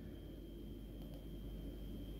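Quiet room tone: a steady low hum with a faint, thin high-pitched whine over it.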